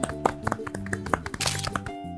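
Two people clapping their hands, a quick run of irregular claps, over light background music; a short hiss near the end.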